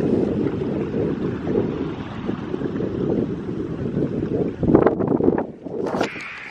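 Wind buffeting the microphone, a steady low rumbling rush, with a few brief knocks near the end.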